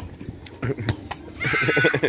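A child's shrill shout, held for about half a second near the end, after a few short knocks.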